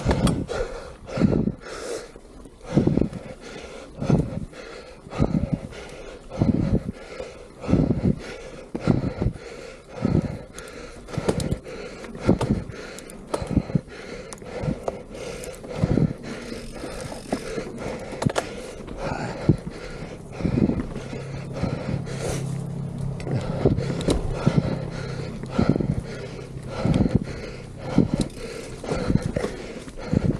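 A mountain biker breathing hard during a trail descent, with loud, regular breaths a little more than once a second, over tyre and wind noise on a dirt singletrack. A steady low hum joins in for a few seconds past the middle.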